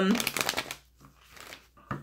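Tarot cards being handled: a brief rapid rustle of cards, then fainter rustling and a single click near the end.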